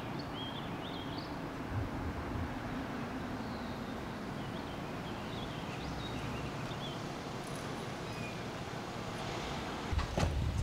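Steady outdoor background of a car driving slowly along a quiet road, with faint short bird chirps above it.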